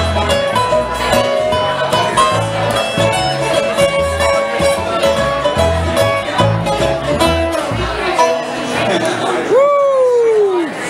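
A bluegrass band playing live: banjo rolls over acoustic guitar and upright bass, with the bass dropping out about two seconds before the end. Near the end a single voice-like cry rises and then falls in pitch.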